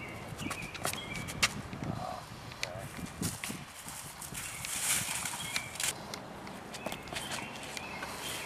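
Footsteps and scuffs on a disc golf tee pad during a drive, with a sharp click about one and a half seconds in. Wind rushes through the trees around the middle, and short high chirps come and go throughout.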